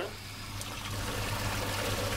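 Water rushing through a gate valve and its pipework as the handwheel is turned open, the flow noise growing louder, over a steady low hum.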